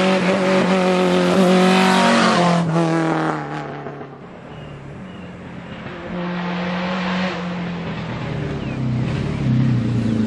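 Race-prepared VW Scirocco Mk1 engine revving hard as the car drives through a bend, then fading out about four seconds in. The engine is heard again from about six seconds in, growing louder as the car approaches.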